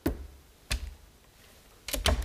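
Three sharp, irregularly spaced knocks, struck to mimic the thuds of people collapsing in a faint.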